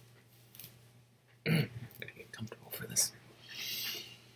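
A man's low, half-voiced murmur and small mouth sounds under his breath, then a long breathy exhale near the end.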